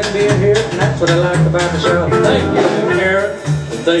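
Live country band playing, with guitar out front; a man starts to speak over it right at the end.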